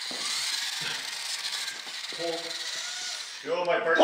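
Small electric motor and gears of a radio-controlled model forklift whirring as it drives, with faint voices about halfway through and a voice starting near the end.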